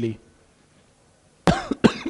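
A man coughs briefly about a second and a half in, after a short pause in his talk.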